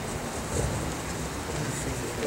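Steady background hiss with a low rumble: room noise with no one talking.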